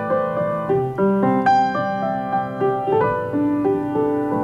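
Grand piano played solo: the introduction to a song, a slow, tender run of melody notes over held chords that ring on into each other.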